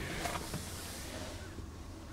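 Quiet background: a low steady hum under a faint hiss that fades away, with a couple of faint clicks in the first half second.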